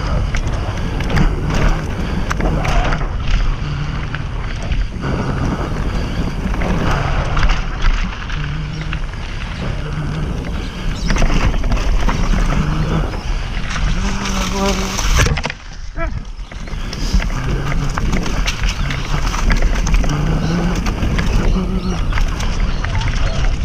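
Mountain bike ridden fast down a dirt trail: wind rushing over the camera microphone with a constant rumble of tyres on dirt and frequent clicks and knocks from the bike rattling over bumps and rocks.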